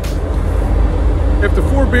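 Wind buffeting the microphone on an open ferry deck at sea, a loud, rough low rumble, with a man starting to speak about a second and a half in.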